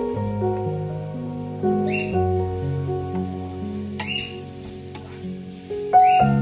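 Soft background music of held, slowly changing notes over chopped onion sizzling in oil in a frying pan, being sautéed until translucent. A wooden spatula stirs the onions, with short scrapes about every two seconds.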